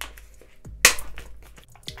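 Clear plastic pouch being opened and makeup brushes slid out by hand: soft plastic handling noise, with one sharp click a little under a second in and a smaller one near the end.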